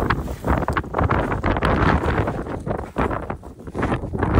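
Strong wind buffeting the camera microphone in uneven gusts, a loud low rumbling rush that dips briefly near the end.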